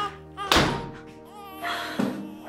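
A refrigerator door shut with a single thunk about half a second in, over background music.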